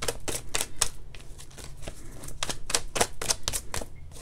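A deck of oracle cards being shuffled and handled by hand: a fast, irregular run of sharp clicks and snaps from the cards.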